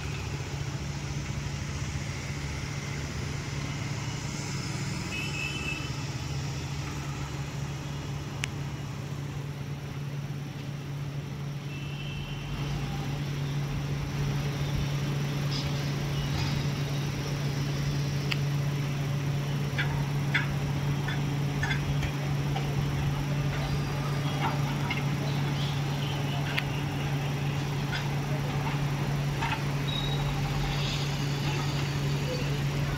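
An engine running steadily with a low drone. From about halfway on it is joined by a scattered run of knocks and clanks.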